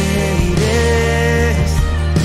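Live worship band music: drum kit, acoustic guitar and bass under a held melody line, playing steadily.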